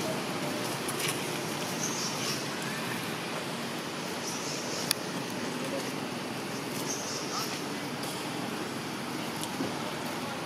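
Steady outdoor background noise with indistinct voices, a high hiss that swells and fades about every two and a half seconds, and a couple of sharp clicks.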